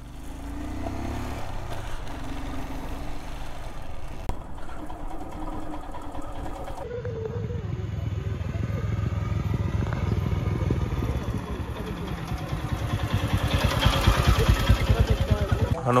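Motorcycle engine running on the move, heard from the bike. After a cut about seven seconds in, a motorcycle approaches, its engine pulses growing louder as it nears.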